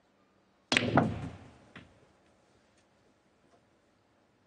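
Snooker cue striking the cue ball into the black at close range: a sharp click with a short rattle that dies away quickly. A second, smaller knock follows about a second later.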